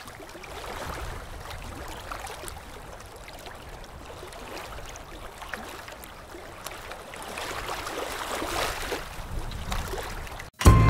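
Moving water sloshing and gurgling, a steady wash that grows louder in the last few seconds.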